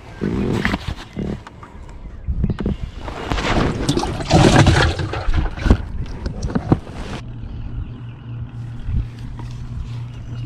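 A bass put into a boat's water-filled livewell, splashing and handled, loudest a few seconds in, with a couple of sharp knocks near the end of it. From about seven seconds a steady low motor hum takes over.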